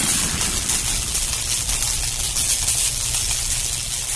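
A steady rushing noise with a low rumble and a bright hiss, easing slightly: the tail of a sound effect in the edited intro.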